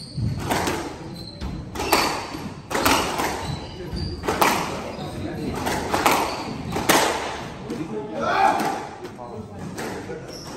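Squash rally: a squash ball struck by rackets and hitting the court walls, sharp knocks about once a second that ring in the court, with voices in the background.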